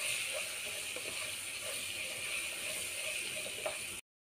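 Sliced onions sizzling in hot oil in a pan as they are stirred in, a steady frying hiss.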